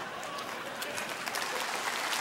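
Live theatre audience applauding, the clapping growing a little louder.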